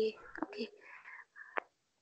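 A voice speaking softly, close to a whisper, in short broken fragments, with a brief click about one and a half seconds in.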